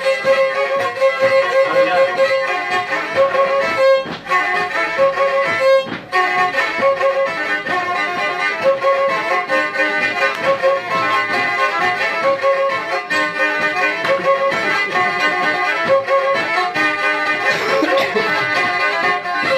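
Black Sea kemençe played solo with the bow: a fast, unbroken run of short notes in a Karadeniz folk tune, with two brief breaks about four and six seconds in.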